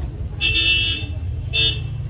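A vehicle horn honks twice, first a longer honk and then a short one, over a steady low rumble.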